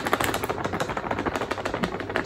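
Plastic packet of gram flour crinkling as a spoon digs into it to scoop flour, a fast, continuous patter of small clicks.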